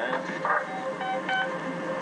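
Three short electronic beeps, each a single steady pitch, about a third of a second apart, like keypad tones.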